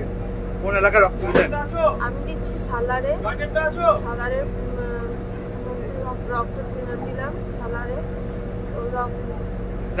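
A woman talking over a steady low machine hum.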